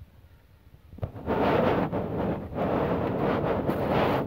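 Quiet for about a second, then loud wind noise buffeting the phone's microphone as it moves fast along the escalator, dipping briefly twice.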